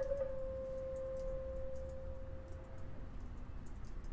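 Clarinet holding a soft final note that fades away to nothing over about three seconds, leaving faint room hum.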